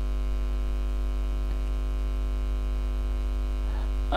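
Steady electrical mains hum, a low drone with a thin buzz of evenly spaced overtones above it, unchanging throughout. It belongs to the audio recording chain rather than the street.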